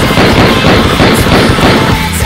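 Automatic-gunfire sound effect: a rapid, continuous string of loud bangs over heavy rock music. It cuts in just before the start and stops near the end.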